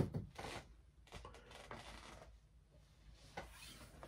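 Faint rubbing and brushing as a large art print is handled and slid about close to the microphone, with a few soft scrapes, the first right at the start.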